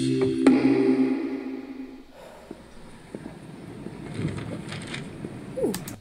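Opening of a music video playing: a held chord that fades out about two seconds in, then a quieter stretch of hiss with scattered clicks and a short falling tone near the end.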